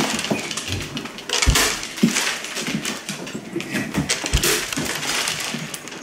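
Pumpkin pulp and seeds being scooped out by hand: irregular wet scraping and crackling, with a few dull thuds of the pumpkin against the wooden table.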